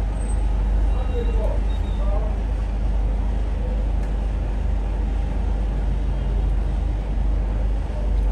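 Steady low background rumble of machinery or traffic, with faint indistinct voices in the first couple of seconds.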